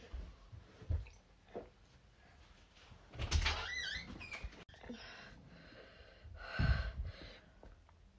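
A woman breathing hard through her mouth from the burn of a Dragon's Breath superhot chilli: two loud, hissing exhales, the first about three seconds in with a faint wavering whine, the second near seven seconds. A few soft low thumps come in the first second or so.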